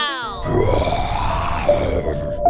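Edited-in cartoon sound effect: a quick falling pitched glide, then about a second and a half of rough, noisy sound, over background music.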